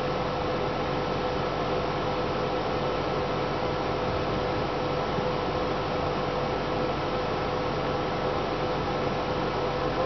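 Steady hiss with a faint steady hum underneath and no other sound: background room or recording noise.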